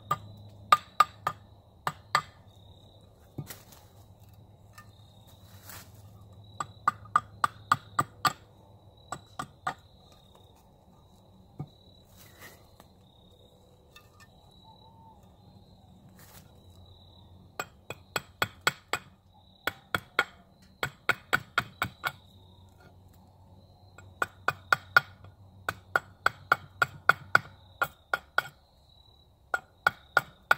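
A hatchet chopping into a knotty Osage orange axe-handle blank stood on a stump, roughing out the handle's shape: runs of quick sharp strikes, about three or four a second, with a pause of several seconds in the middle.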